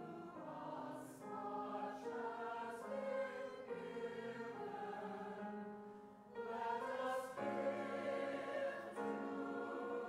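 Mixed church choir of men's and women's voices singing together, with a brief break between phrases about six seconds in.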